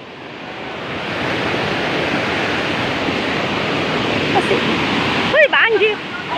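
Fast brown floodwater rushing in a swollen river, a steady noise of water that swells up over the first second or so. A person's voice calls out briefly near the end.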